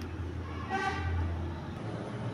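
A brief horn-like toot of steady pitch, about half a second long, a little under a second in, over a steady low hum.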